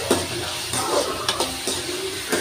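A slotted metal spatula stirring chopped onions, tomatoes and curry leaves frying in oil in an aluminium kadai: a steady sizzle with about five separate scrapes of the spatula against the pan.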